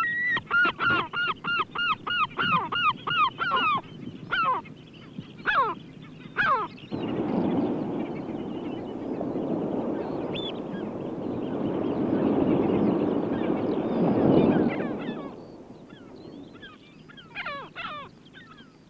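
Gulls calling in a quick run of falling cries, about four a second, then in scattered single calls. From about seven seconds in, breaking surf takes over as a steady rush for some eight seconds before fading, with a few gull calls again near the end.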